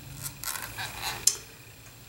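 Quiet handling noises of a compact makeup palette being picked up and held: soft rustling and scraping, with a sharp click about a second and a quarter in.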